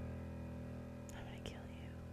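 The held closing chord of a podcast theme tune, fading slowly. About halfway through, a short whispered voice sounds over it.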